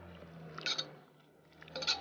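Faint sounds of a spoon stirring boiled pasta coated in cooked ground peanut in a nonstick pot: soft wet squishing with one brief scrape about two thirds of a second in, then the sound drops out abruptly.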